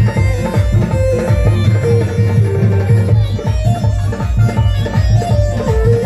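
Loud dance music with a steady, heavy bass beat and a melody line over it.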